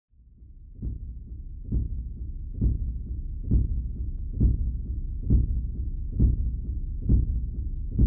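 Deep, heartbeat-like bass thumps about once a second over a low steady drone, fading in at the start: a pulsing logo-intro sound effect.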